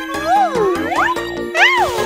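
Cheerful children's game music with tinkling chime effects, and a string of quick pitched glides that swoop up and down over a held note.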